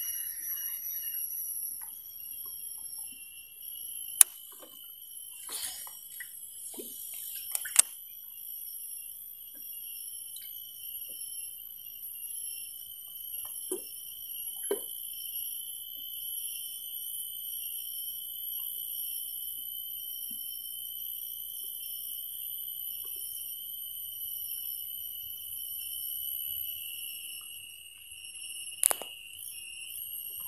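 A steady, high-pitched insect chorus, typical of cicadas in mangrove forest: several ringing tones held without a break. A few sharp clicks or knocks come through, the loudest about four and eight seconds in and again near the end.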